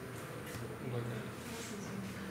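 Quiet classroom room tone: faint murmured voices over a low buzzing hum, with a thin steady high whine.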